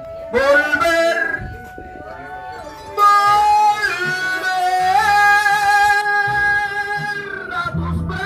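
A man singing Latin-style music into a microphone, amplified through a portable speaker, over a guitar backing. Short sung phrases come first, then about three seconds in a loud, long held note that bends in pitch before he lets it go near the end.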